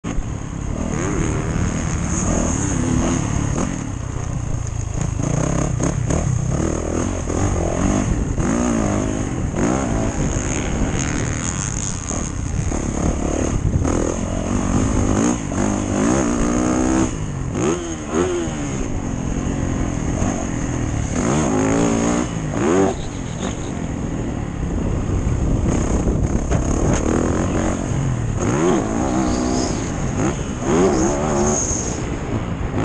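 Motocross dirt bike engine revving hard and falling back again and again as it is ridden round the track, the pitch sweeping up and dropping with each throttle change and gear shift. A steady rush of noise runs under it.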